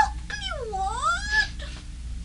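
A cat-like meow: one long call that dips in pitch and then rises again.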